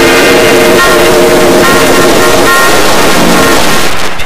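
Heavily distorted, clipping 'G Major'-style audio effect on an animation's soundtrack: harsh sustained chords of several tones over a loud hiss, the chord shifting pitch about once a second.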